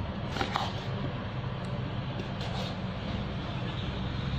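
Glasses of flour being tipped into a plastic mixing bowl: a few faint, brief scrapes and knocks, the clearest about half a second in, over a steady low hum.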